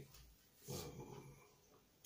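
Near silence in a pause of speech, broken once, just under a second in, by a man's short hesitant "uh".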